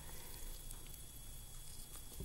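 Quiet room tone: a steady low hum and a faint high whine, with faint small handling sounds from gloved hands and a scalpel working on a preserved dogfish.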